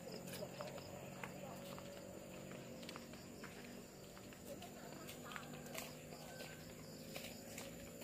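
Faint footsteps on a paved walkway and steps: scattered light taps over a quiet, steady outdoor background.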